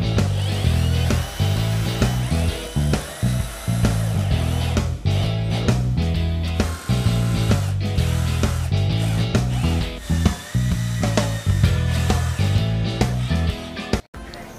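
Cordless drill/driver driving screws into pine pallet boards, its motor spinning up several times, under background music with a steady stepping bass line.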